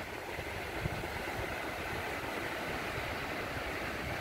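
A light sea breeze buffeting the microphone with a low, uneven rumble over the steady wash of small surf breaking on the beach.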